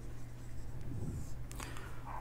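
Marker pen writing on a whiteboard: a few faint strokes finishing a word, ending with an underline.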